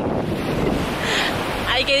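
Wind buffeting the microphone, with small waves washing onto a sandy beach underneath.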